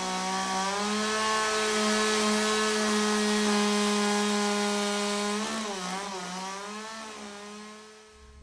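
Two-stroke chainsaw cutting into wood, its engine held at a steady high pitch. The pitch rises slightly about a second in, drops after about five and a half seconds, and the sound then fades away near the end.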